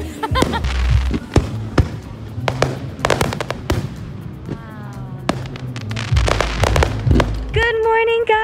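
Fireworks going off: a quick series of sharp bangs and crackles over a low rumble.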